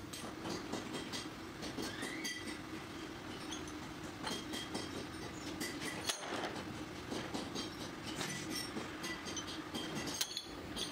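Metal brake shoes clinking and clattering as they are handled and slid onto a rod, over a steady machine hum.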